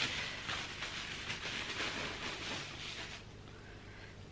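Plastic bubble-wrap packaging crinkling and rustling as it is handled and opened, a dense crackle that thins out near the end.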